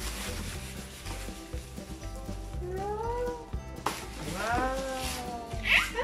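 Torn newspaper scraps rustling as hands dig through and toss them, over steady background music. A young child's rising and falling vocal calls come in the second half, with a brighter cry near the end.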